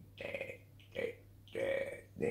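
A person's voice: three short vocal sounds, about a third of a second to half a second each, with a steady low hum underneath.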